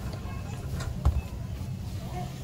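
Grocery-store background: a steady low hum with faint background music, and one sharp knock about a second in.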